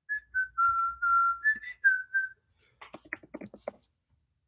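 A man whistling a short tune of about eight notes lasting a little over two seconds, followed near the end by a quick run of clicks.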